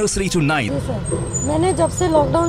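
A woman speaking over a steady low rumble of background noise.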